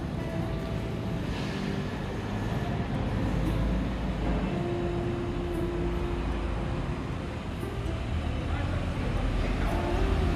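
Steady low rumble of background traffic and ambient noise, picked up by a phone's built-in microphone while walking, with faint music-like tones.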